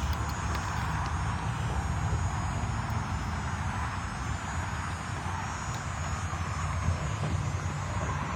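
Steady low rumble with a hiss over it, outdoor background noise with no distinct event and no voices.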